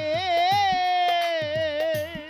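Live Bengali folk song: a male singer holds one long note with vibrato into a microphone, over repeated drum beats.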